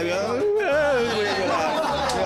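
Several men's voices chattering and laughing together, with band music faintly underneath.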